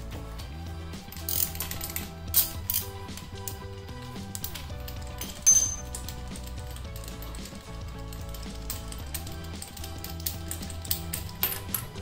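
Ratchet wrench clicking in short, irregular runs as a spark plug is loosened and backed out of a small motorcycle engine's cylinder head, with a few louder clacks of the tool, over steady background music.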